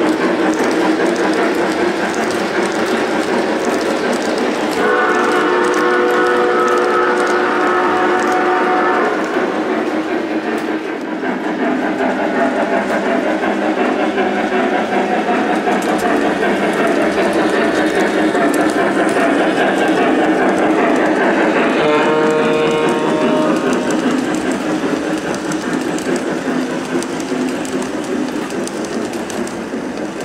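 Lionel O-gauge Southern Pacific GS-2 train running on three-rail track, with a steady rolling clatter from the wheels. The locomotive's onboard sound system blows its steam whistle twice: a long blast about five seconds in lasting about four seconds, and a shorter one a little past the twenty-second mark.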